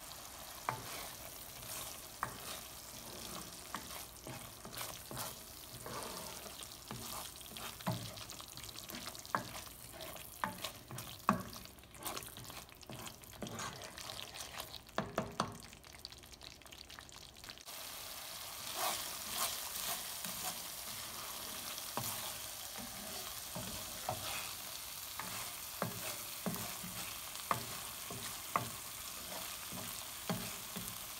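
Thick garlic-chili chutney paste sizzling in a nonstick pan while a spatula stirs it, with frequent short pops and taps. The sizzle gets louder and steadier a little over halfway through. The paste is being cooked down until it thickens and oil separates out.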